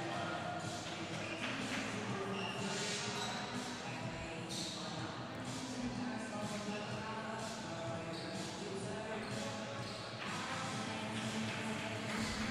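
Basketball arena sound in a large hall: indistinct voices with a ball bouncing on the court now and then, over faint music.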